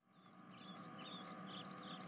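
Faint bird chirps, a run of short high chirps that fade in after a moment of silence.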